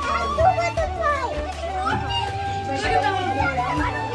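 Children's chatter and voices over background music with a steady, pulsing bass line.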